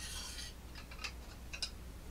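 Faint handling noise from a Smith's clamp-style knife-sharpening guide with a blade held in it: a brief rustle, then a few small clicks of plastic and metal.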